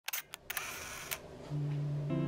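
A few sharp clicks and a short rustle in the first second or so, then music starting about one and a half seconds in with low held notes.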